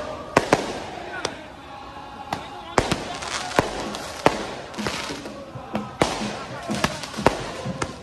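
Firecrackers going off in the street, about fifteen sharp bangs at irregular intervals, over a background of voices.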